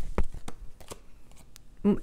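Oracle cards being handled and drawn from a deck: a scatter of light, quick card clicks and taps.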